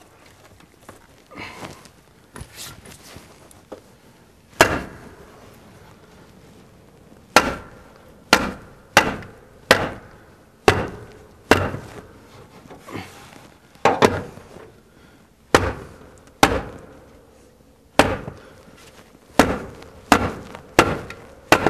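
Hand hammering on a wooden wall: about a dozen sharp knocks, roughly one a second, starting a few seconds in after some quieter handling sounds.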